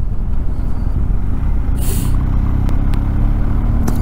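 BMW R 1250 GS boxer-twin engine running as the motorcycle rides along, a steady low rumble mixed with road and wind noise. A steady engine note stands out from a little before halfway, and a brief hiss comes at about the midpoint.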